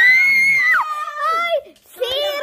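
High-pitched shrieking voice: one long held shriek of nearly a second, then a shorter cry that falls in pitch.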